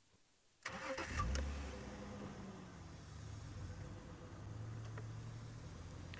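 Open safari game-drive vehicle's engine starting about half a second in, catching quickly and settling into a steady idle.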